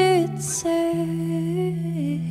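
A woman singing softly in long held notes over a sustained electric guitar, part of a slow folk song. One note ends just after the start and the next is held from about half a second in, while the low guitar note underneath steps to a new pitch.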